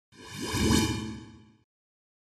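Whoosh sound effect of a TV channel logo ident, swelling up and fading out within about a second and a half.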